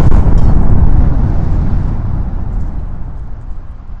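A deep cinematic boom sound effect, its low rumbling tail fading away steadily.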